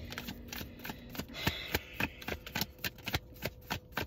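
Deck of tarot cards being shuffled by hand, a quick, irregular run of card clicks and slaps.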